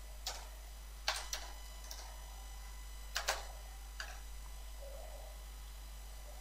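A few scattered computer keyboard keystrokes, short sharp clicks coming unevenly over the first four seconds, over a faint steady low hum.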